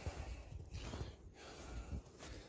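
A man breathing heavily, two soft breaths with a short pause about a second in.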